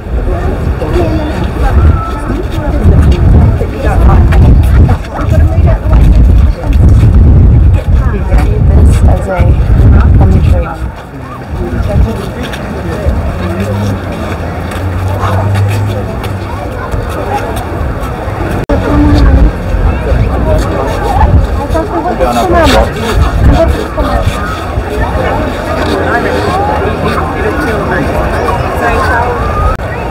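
Wind buffeting the microphone in irregular low rumbling gusts, heaviest in the first ten seconds, with people's voices talking nearby.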